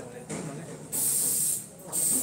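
Aerosol spray can hissing in two bursts. The first, just over half a second long, starts about a second in; the second starts near the end.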